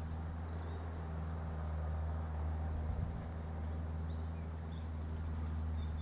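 Outdoor rural ambience: a steady low hum with faint, short high chirps of distant small birds scattered through the middle.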